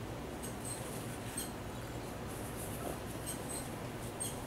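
Faint handling of crochet work, yarn and hook being worked by hand, with a few small high clicks scattered through it over a steady low background hum.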